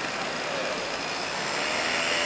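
Steady background noise, an even hum and hiss with no distinct strikes; the knife passing through the soft block makes no clear sound of its own.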